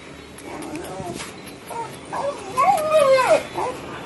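A dog whining and crying in excitement, a run of wavering cries that rise and fall in pitch, loudest about three seconds in.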